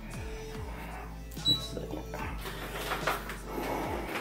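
Background music with a repeating falling low figure over a steady low hum, with faint handling clicks and one short high beep about one and a half seconds in.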